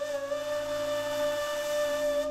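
Ney (end-blown reed flute) holding one long, breathy note steadily.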